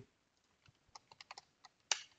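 Typing on a computer keyboard: a quick run of keystrokes in the second half, the last one loudest.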